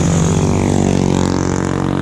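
A motor vehicle passing close by on the road, its engine note dropping in pitch as it goes past.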